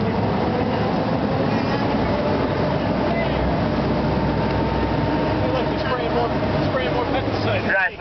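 Amphibious duck tour boat under way on the lake, its engine running steadily to drive the propeller, with water rushing past the hull.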